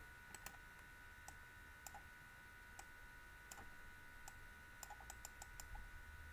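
Faint, scattered computer mouse clicks, coming several in quick succession near the end.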